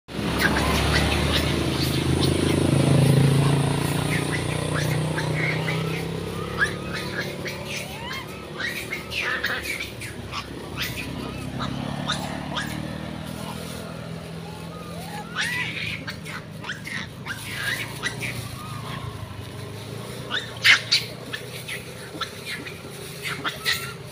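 A motor vehicle passes on the road, loudest about three seconds in and fading away by about six seconds. After it, many short high chirps and squeaks and a few sharp clicks come and go over a quiet outdoor background.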